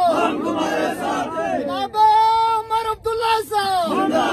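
Call-and-response political slogan chanting: a crowd of men shouts back in unison, then one man gives a long, drawn-out shouted call, and the crowd starts answering again at the very end.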